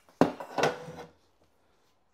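The front rail of a laser engraver is set down with a sharp knock just after the start, followed by about a second of handling and rubbing noises.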